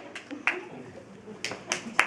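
Applause thinning out to a few scattered hand claps, about four separate claps over two seconds.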